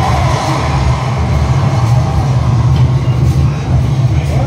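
Loud, steady low rumbling from a museum earthquake simulator's sound system, recreating a strong earthquake while the mock shop room shakes.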